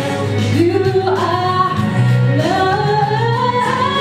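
A woman singing a gospel song into a microphone over steady instrumental accompaniment, her voice sliding up into a long held note twice.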